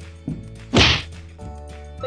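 A single loud whack about three-quarters of a second in, a smaller knock just before it, as a plastic monster toy strikes and knocks over a toy figure. Steady background music runs underneath.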